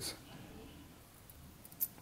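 Faint fiddling with a small metal adjustable-wrench keychain as its worm screw is turned by hand, with one short click near the end. The jaw binds on the thread and doesn't close fully.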